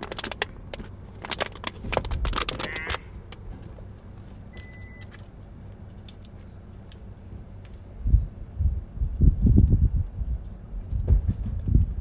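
Empty plastic juice bottles being picked up and handled, a dense run of crinkling clicks for the first three seconds or so. After a quiet stretch, irregular low rumbling thuds come through near the end.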